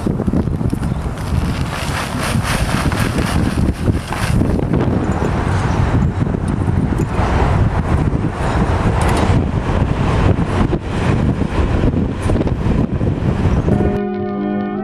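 Wind buffeting the camera's microphone: a loud, gusting rumble with no steady tone.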